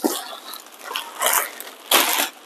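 Plastic wrapping film rustling and crinkling as it is handled and pulled off a boxed espresso machine, in uneven bursts, the loudest a little over a second in and again at the end.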